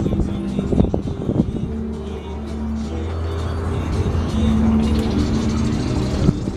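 Music playing from a radio over a steady low hum.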